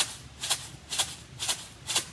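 Homemade shaker, a small plastic kitchen container filled with rice, shaken in a steady beat of about two sharp rattling strokes a second, a 'ch ch' sound used as a train rhythm.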